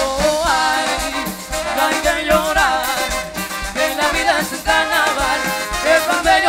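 Live Latin band playing an upbeat salsa-style dance number: congas and drum kit keep a busy rhythm under a melody line that runs on without a break.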